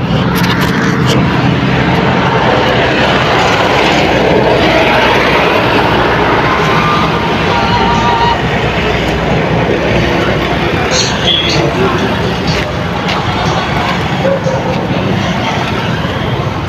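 Vehicle engine running with steady road traffic noise, the low engine tone strongest in the first few seconds.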